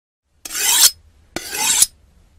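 Two scraping strokes of a knife blade drawn along a sharpening steel, each about half a second long, growing louder and then stopping sharply.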